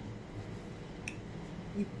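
Quiet room tone with a low steady hum. A single faint click comes about a second in, and a voice starts near the end.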